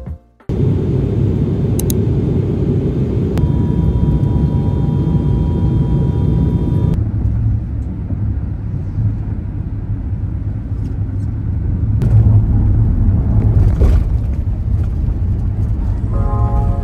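Steady low road and engine rumble heard inside the cabin of a moving passenger van.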